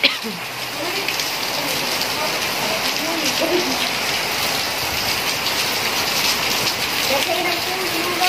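Heavy rain falling steadily onto wet paving, a dense, even hiss with no let-up.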